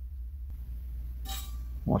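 Soldering iron working a wire joint on a guitar potentiometer lug. A single short, light clink-like sound comes a little past halfway, over a steady low hum.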